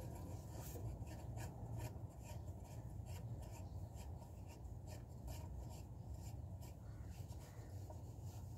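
Faint, irregular scraping and clicking strokes, about two to three a second, from hand tools working the bolts of a diesel engine's crankshaft pulley hub, over a steady low hum.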